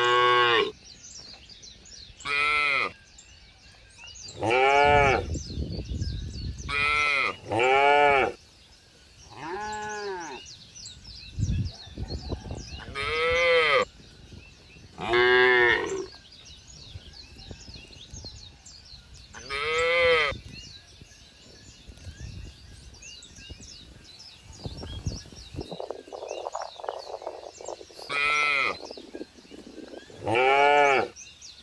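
Cattle mooing again and again: about ten short, high-pitched calls, each rising and falling in pitch, spaced a couple of seconds apart, with a longer gap before the last.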